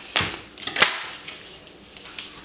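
Kitchen knife cutting tomato slices on a paper plate, with two sharp knocks about half a second apart, the second the loudest, then faint handling noise.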